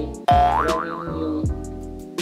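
Background hip-hop-style music with a steady beat of deep kick drums. About a quarter second in, a comic sound effect cuts in loudly: a tone that slides upward and then wobbles up and down for about a second.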